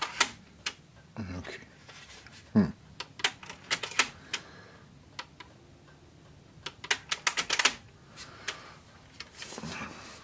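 Technics RS-TR210 cassette deck's transport keys pressed and the mechanism clicking in, in several quick bursts of sharp clicks. No music plays back.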